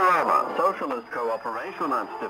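A voice speaking over a shortwave radio broadcast, with a faint steady high whistle behind it.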